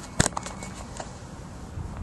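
Handling noise from a hand-held camera being moved: a sharp knock about a quarter second in, followed by a few lighter clicks, over a low steady background hiss.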